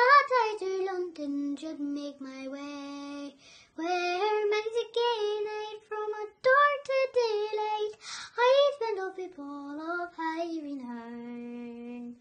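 A young girl singing an Irish ballad unaccompanied in a clear voice, with two short pauses for breath and a long low note held near the end.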